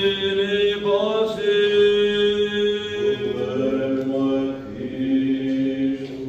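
Byzantine Orthodox chant: voices holding long, steady notes in two parts, the lower part stepping up to a new note about halfway through.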